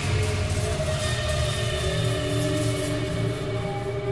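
Tense background score for a film: sustained held tones over a steady low pulsing drone.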